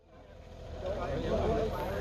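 Several people talking over a low, steady engine rumble, the sound fading up from silence in the first second.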